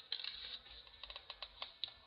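Faint, irregular clicking and ticking, about a dozen small clicks, most of them in the second second, from printed paper pages and a pen being handled.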